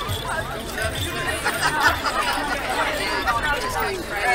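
Crowd chatter: several people talking at once, their voices overlapping.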